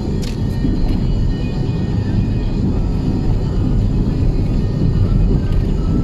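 Steady low road and engine rumble inside the cabin of a moving car, with a few light clicks in the first second.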